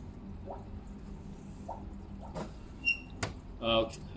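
Steady low hum with a water trickle from a home aquarium's submerged filter pump, with a couple of clicks and a short high-pitched chirp about three seconds in. A man's voice is heard briefly near the end.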